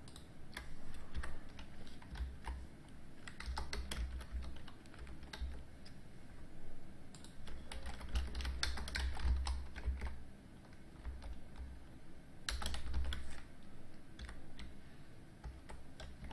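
Typing on a computer keyboard: irregular bursts of keystrokes separated by short pauses, with low thumps under the clusters.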